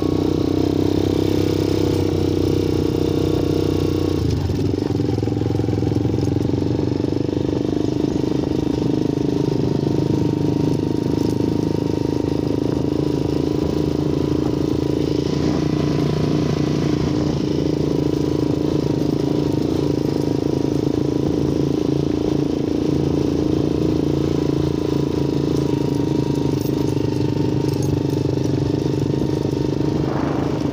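Small motorcycle engine running steadily while being ridden, the pitch shifting slightly about four seconds in.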